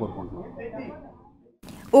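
Speech only: a man's voice trailing off into faint voices, then a moment of dead silence at an edit cut.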